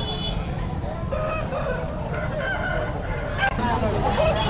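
A rooster crowing, drawn out in several pitched segments, over a steady low background rumble.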